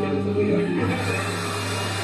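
Yamaha acoustic guitar strummed between sung lines, its low chord notes ringing steadily over a rough background hum.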